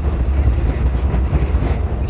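Wind buffeting the microphone outdoors, a loud, steady, low rumble with no clear tones.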